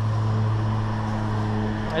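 A steady low mechanical hum, unchanging in pitch, like a motor running.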